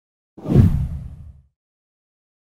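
A single deep whoosh sound effect that swells in about a third of a second in and fades out by about a second and a half.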